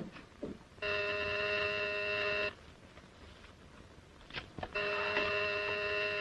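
Electric apartment doorbell buzzing twice. Each ring is a steady tone lasting about a second and a half, with a pause of about two seconds between them. A sharp click comes just before the first ring.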